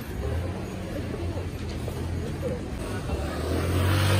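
Small motor scooter's engine running, a steady low hum that grows louder near the end as it passes close by, with crowd voices around it.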